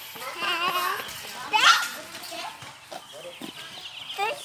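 A toddler's excited vocalising: wavering cries, then a loud, high squeal rising in pitch about a second and a half in.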